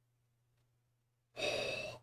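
Near silence with a faint low hum, then about one and a half seconds in a man's short, breathy gasp of surprise lasting about half a second, running straight into a spoken "oh".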